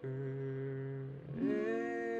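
A young man humming two long held notes, the second sliding in a little higher about a second and a half in, with a slight waver.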